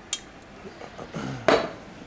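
Kitchen clatter of utensils and cookware: a short clink just after the start and a sharper knock about a second and a half in.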